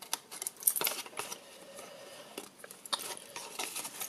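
Scissors cutting through cardstock in a series of short snips, the blades clicking with each cut.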